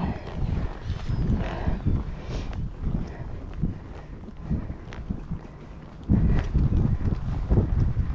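Hoofbeats of a ridden horse moving over a sand arena surface, heard as soft dull thuds through a camera on the rider, with rumble from wind and movement on the microphone. It gets louder from about six seconds in.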